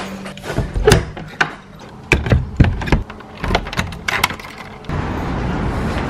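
A metal door lever and latch clicking and knocking as a door is opened and shut, a string of sharp clicks over about four seconds. About five seconds in, a steady background rush takes over.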